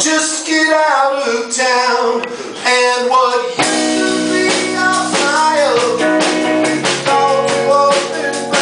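Live rock trio playing: male vocal over vintage electric guitar, with bass and drum kit. About three and a half seconds in, the band fills out with held low bass notes and steady drum hits.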